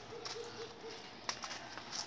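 A bird calling faintly in the background: a quick run of about five short, low notes in the first second, followed a little later by a single faint click.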